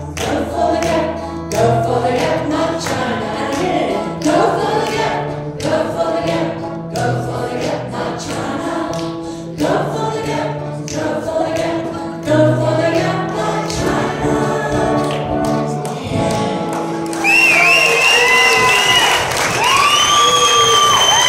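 Acoustic guitar strummed with singing, the final bars of a live song, ending about three-quarters of the way through. The audience then breaks into applause and cheering, with high gliding whistle-like tones.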